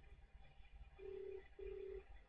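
Telephone ringback tone: a double ring of two short pulses of one steady low tone about a second in, the Australian ring pattern heard while the called number has not yet answered.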